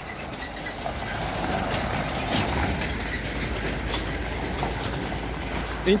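Semi-truck with an empty flatbed semi-trailer pulling away across gravel: a steady low engine rumble with the empty trailer rattling as it rolls, a little louder in the middle.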